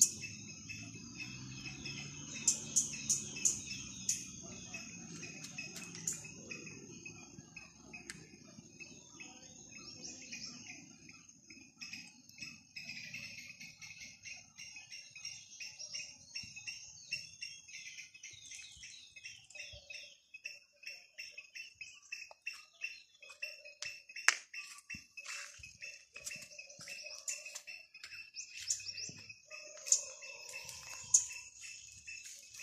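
Steady high insect trilling with birds chirping throughout. A low rumble fades away over the first several seconds.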